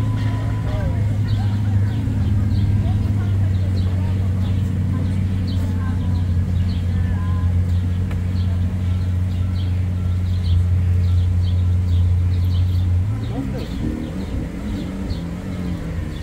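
Lamborghini Aventador V12 idling with a steady low hum. About thirteen seconds in the engine note rises a little and wavers for a couple of seconds.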